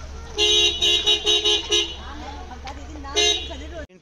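A vehicle horn tooting in a quick run of short honks for over a second, then one more short honk about three seconds in.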